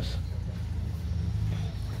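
A low, steady motor hum that fades near the end.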